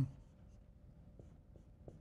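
Faint dry-erase marker drawing on a whiteboard: a few light taps and strokes in the second half, over quiet room tone.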